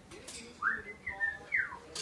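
Three whistled notes: a rising whistle, a short level one, then a falling whistle, in the space of about a second.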